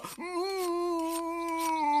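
A cartoon character's voice holding one long, steady hum, an anxious 'mmm' that sags slightly in pitch at the end.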